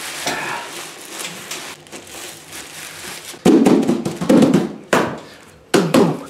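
Black plastic bin bag crinkling and rustling as it is gathered and twisted shut around a box. The rustle grows loud about halfway through, with a couple of sharp crackles of the plastic toward the end.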